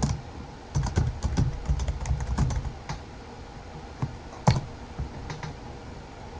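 Typing on a computer keyboard: a quick run of keystrokes for about two seconds, then a single louder keystroke a little past the middle.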